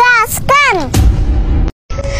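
Two short vocal cries that rise and fall in pitch, then about a second in a sudden low rumbling boom like an explosion sound effect. The boom cuts off abruptly near the end.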